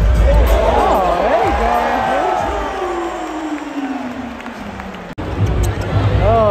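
Arena sound system playing music over crowd noise at a basketball game, with a long tone sliding steadily downward over about three seconds. The sound drops out for an instant about five seconds in.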